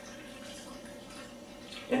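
40% spirit poured from a plastic jug into a plastic container fitted with a carbon filter cartridge: a faint, steady trickle of liquid.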